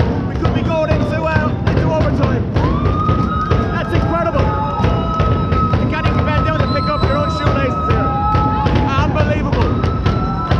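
Ice hockey arena crowd noise with music after an equalising goal: dense fast percussive beats throughout. A long, steady horn-like tone glides up about three seconds in and holds for about six seconds.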